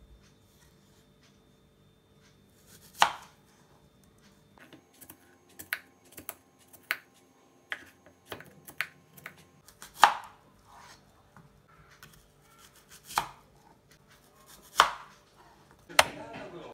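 Kitchen knife slicing a crisp Asian pear on a cutting board: sharp knocks as the blade meets the board, the loudest about three, ten, thirteen and fifteen seconds in, with a run of lighter ticks in between.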